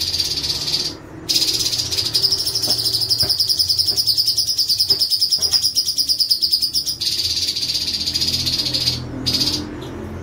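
Orange-bellied leafbird (cucak cungkok) singing a very fast, rolling trill almost without pause. It breaks off briefly about a second in and again near the end.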